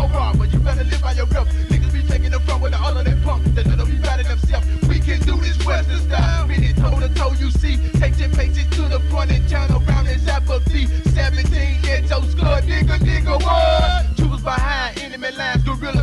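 Memphis rap track from a cassette rip: a heavy sustained bass line and drum-machine hits under rapped vocals. About 14 seconds in, the bass drops away and a wavering higher melody takes over.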